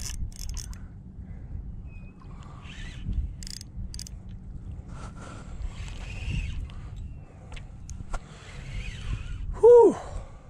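Wind rumbling on the microphone over choppy water while a spinning reel is worked against a hooked fish, with faint clicks and patches of hiss from the tackle. Near the end comes one short grunt of effort from the angler.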